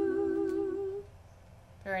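A voice humming one long, steady note that stops about a second in.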